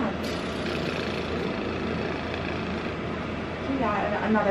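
Steady background rumble of room noise with faint voices in it; a voice starts just at the end.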